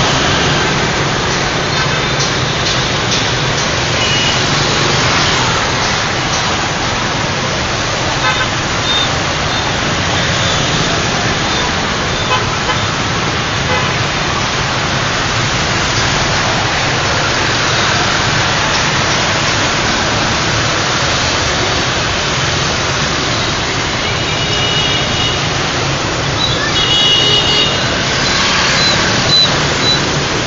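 Dense city street traffic of motor scooters and cars passing, a steady wash of small engines and road noise. Horns toot briefly now and then, with two longer honks near the end.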